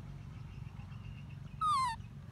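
A baby macaque gives one short, high whimpering coo near the end that slides down in pitch, over a steady low background hum.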